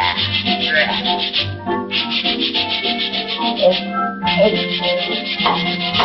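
Stiff scrubbing brushes scrubbing hard as a cartoon sound effect: quick, rhythmic back-and-forth strokes in three runs of about a second and a half each, over orchestral music.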